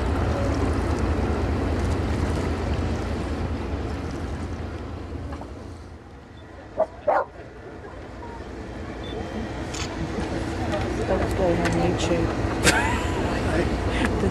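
Outdoor waterfront ambience. Wind rumbles on the microphone and fades away by the middle. Two short sharp calls come close together about seven seconds in, then distant people's voices chatter in the background.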